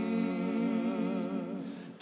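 A held sung note with an even vibrato over a sustained chord, fading out just before the end.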